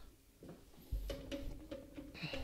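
Faint clicks of a hard plastic graded-card slab being set down on a stack of slabs, over a faint held tone that starts about a second in.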